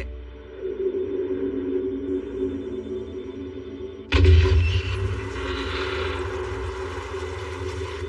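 Animated film soundtrack: sustained background music with sound effects, and a sudden louder noisy effect about four seconds in that fades slowly.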